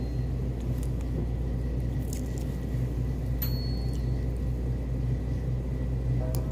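Steady low machine hum of a convenience store's background, with a few faint clicks.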